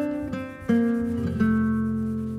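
Background acoustic guitar music: plucked notes left to ring and slowly fade, with new notes struck twice, a little under a second in and again about a second and a half in.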